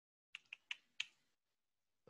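Four faint keystrokes on a computer keyboard, typed in quick succession within about a second.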